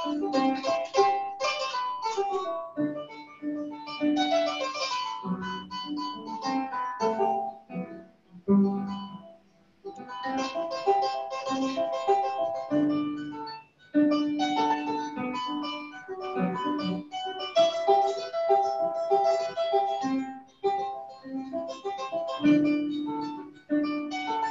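Solo kora, the West African harp, played with plucked notes ringing in fast cascading runs over recurring low bass notes. There is a brief pause about nine seconds in.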